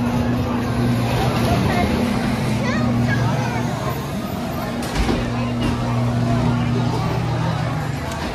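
Dark-ride cars rolling along their track with the ride machinery's steady low hum, over a background of people's voices. A single knock sounds about five seconds in.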